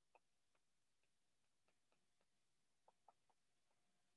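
Near silence, with very faint irregular clicks of a stylus tapping on a tablet screen during handwriting.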